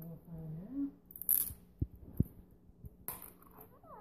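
A short hummed voice in the first second, then a rustle and a few sharp light clicks and knocks as a plastic Easter egg with coins inside is opened.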